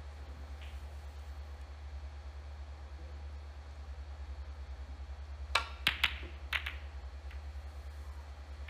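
Snooker balls clicking: the cue tip strikes the cue ball a little past halfway through, followed within about a second by three more sharp clicks as the balls collide and the pack of reds is split. A steady low hum sits underneath.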